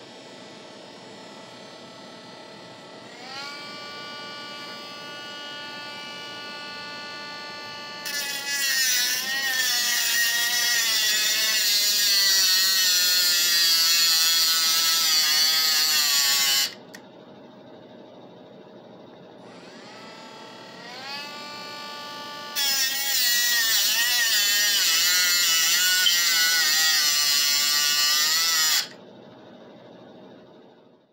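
Cordless metal-cutting saw cutting through a metal BB gun part. The motor spins up to a steady whine about 3 seconds in and gets much louder and rougher about 8 seconds in as the blade bites, its pitch wavering under load, and stops near 17 seconds. It spins up again around 20 seconds and cuts a second time from about 23 seconds until it stops near the end.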